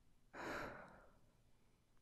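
A man's soft, breathy exhale, like a sigh, starting about a third of a second in and fading away within about half a second.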